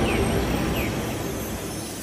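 The tail of a logo-reveal sound effect: a rumbling whoosh dying away steadily, with two short falling chirps over it.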